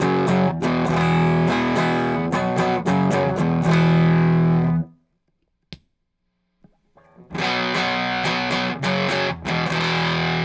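Nash T-57 Telecaster played through a Walrus Audio Jupiter fuzz pedal into a Morgan RCA35 amp, distorted, in the pedal's middle clipping mode with the fuzz knob all the way down. The playing stops about five seconds in, leaving a short silence with a single click, then starts again about two seconds later.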